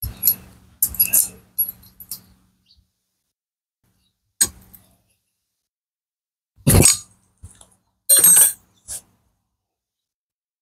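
Metal clinks and knocks from hand-fitting a camshaft lock plate into a Honda Wave 125S aluminium cylinder head and turning its bolt with a T-handle socket wrench. There is a run of light clicks in the first two seconds, then a few louder, longer clatters from about six and a half seconds on.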